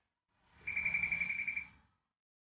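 Electronic beep from the touch-screen learning computer: a steady high tone pulsing rapidly, about ten times a second, for about a second.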